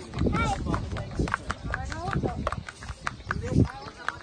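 A pony walking on a tiled walkway, its hooves clip-clopping in short sharp knocks, under people's voices.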